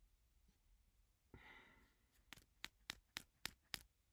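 A soft sigh into the microphone about a second in, followed by six quick, evenly spaced clicks, about four a second.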